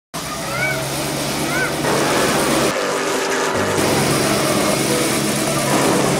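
A car engine running amid a mix of voices and music, with a few rising-and-falling tones in the first two seconds.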